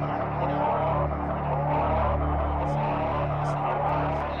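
Electronic synthesizer drone: steady low sustained tones that swell and fade every second or two beneath a dense, hissing wash of noise.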